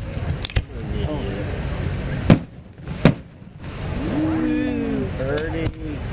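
Two sharp fireworks bangs a little under a second apart, about two seconds in, the first the louder, over a constant low rumble of crowd and ambient noise.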